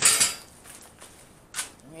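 Steel angle iron clanking and scraping as it is handled and bent up at its grinder-cut slots: a sharp metallic clank at the start that fades within about half a second, then a short metallic clink about one and a half seconds in.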